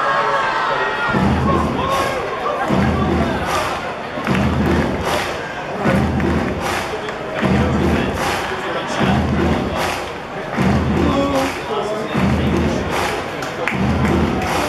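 Ballpark PA music with a heavy stomping beat that repeats about every one and a half seconds, a clap-like hit between the thumps, over steady crowd noise and voices.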